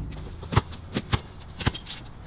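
A basketball being dribbled on a hard outdoor court: three sharp bounces about half a second apart.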